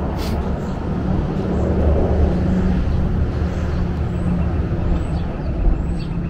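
An engine's low, steady hum and rumble that swells about two seconds in and then eases.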